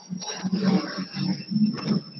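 Indistinct voice sounds, heard through a video call, with no words that can be made out.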